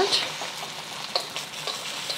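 Beaten eggs sizzling in hot oil in a wok as chopsticks stir them, a steady hiss with a few small crackles.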